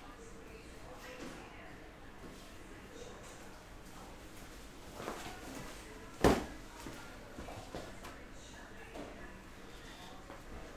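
A single sharp thump about six seconds in, over quiet room noise with a few faint shuffling sounds.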